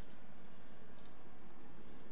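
Steady background hiss of a studio microphone channel in a pause between words, with a couple of faint clicks about halfway through.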